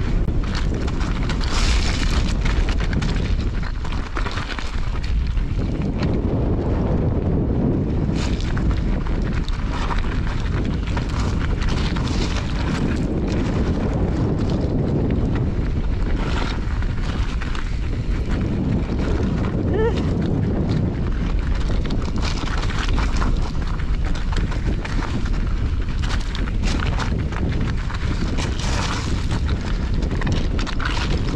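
Heavy wind rumble on a mountain bike's camera microphone while riding down a loose rocky trail, with the tyres crunching over rocks and the bike rattling throughout.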